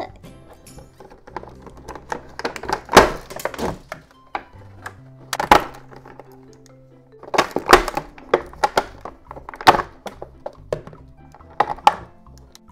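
Stiff clear plastic toy packaging crackling and thunking as it is pulled open by hand, in several separate bouts, the loudest about three seconds in. Light background music runs underneath.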